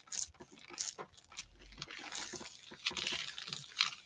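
Hands rubbing and pressing a sheet of paper down onto a gel printing plate: faint rustling and crinkling of the paper, with small scattered ticks, a little busier in the second half.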